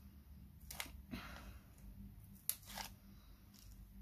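Faint rustles and crinkles of the backing being peeled off strips of sticky tape and handled, a few short scratchy sounds about a second in and again near the middle.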